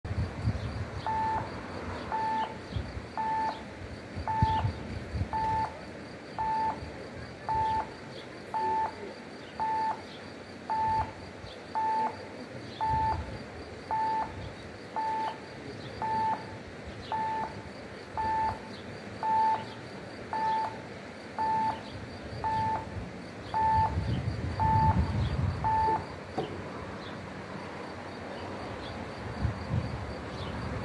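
Swiss level-crossing warning sounder beeping, one short electronic tone about once a second, warning of an approaching train while the red lights are lit and the barriers come down. The beeping starts about a second in and stops a few seconds before the end, once the barriers are down. A low rumble swells near the end of the beeping.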